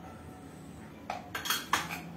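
Kitchen utensils clinking: a quick cluster of sharp metal clinks and rattles starting about a second in.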